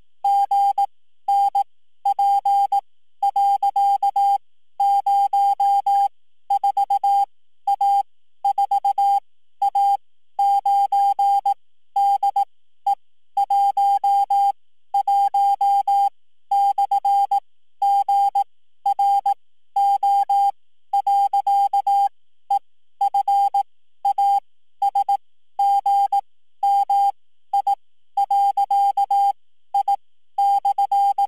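Morse code: one steady beep of middle pitch keyed on and off in short and long tones, dots and dashes with short gaps between. The code spells out a web address to an image, letter by letter.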